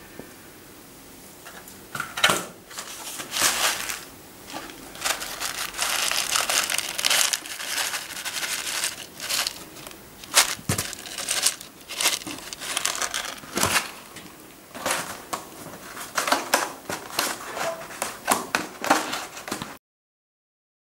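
Rustling and crackling handling noise, as of a hand working in soil and handling a plastic box, in irregular bursts that start about two seconds in and cut off abruptly just before the end.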